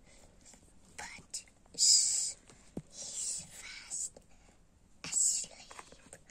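A child whispering in about three short, breathy bursts, with a few faint taps between them.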